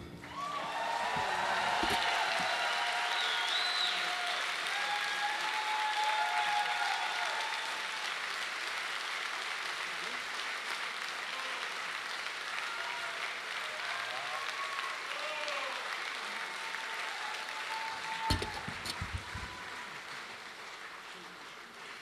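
Audience applauding after a jazz number ends, with a few voices calling out over the clapping. The applause slowly dies down, and a few low knocks come near the end.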